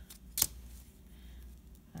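A plastic ruler being moved and set down on paper, with one sharp click about half a second in; otherwise only faint handling.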